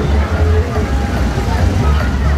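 Loud music with a heavy bass beat pulsing about twice a second from festival loudspeakers, over the chatter of a large crowd.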